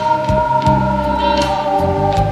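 Pop-rock karaoke backing track in an instrumental break: long held notes over a steady bass line and a drum beat.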